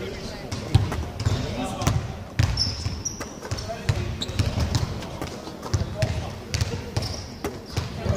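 Basketballs bouncing irregularly on a hardwood court in a large empty arena, with faint voices in the background.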